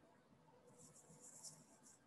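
Near silence between speakers: faint room hiss, with a soft high hiss from about a second in.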